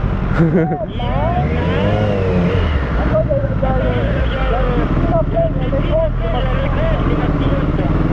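Motorcycle engines running at low speed as two sport bikes pull away from a stop. The engine sound holds steady throughout with no sharp revs, under an indistinct voice.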